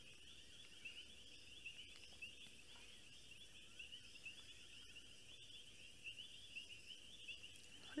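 Faint chorus of insects chirping in the grass: a steady, high-pitched trill of quick repeated pulses, with a few soft clicks.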